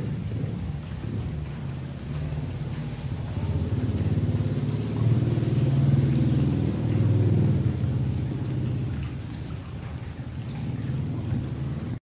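Water in a cave pool: drops falling onto the surface over a steady, deep rumble of moving water, swelling around the middle.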